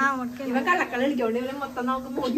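Speech only: a high-pitched voice talking continuously.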